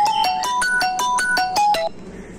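Mobile phone ringtone playing a quick run of short electronic notes for an incoming call, cut off suddenly just before the end when the call is sent to busy.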